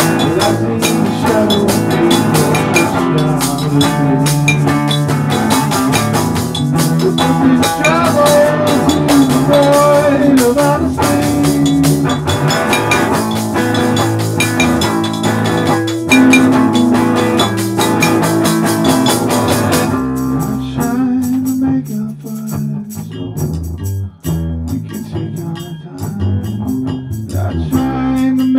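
Live band playing an instrumental passage with drums, bass and guitar; about twenty seconds in it drops to a sparser groove with fewer drum hits, and a tambourine is struck with a drumstick near the end.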